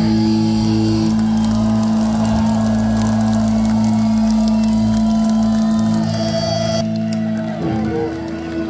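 Live heavy metal band holding one sustained, distorted electric guitar and bass chord, loud and ringing, with wavering high tones over it. The chord stops shortly before the end.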